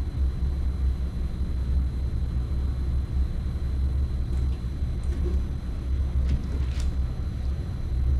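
Steady low background rumble, with a few light knocks near the end as the metal paint can is set down on the bench.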